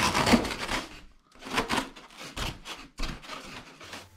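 Polystyrene foam rubbing against polystyrene as a hand presses and shifts foam filler strips in the hollows of an EPS shower-tray support. The sound comes in several irregular scratchy bursts.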